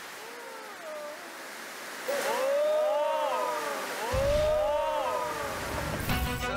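Steady rush of water from an indoor surf-simulator wave machine, with voices calling out in long rising-and-falling cries from about two seconds in. A deep low sound joins near the end.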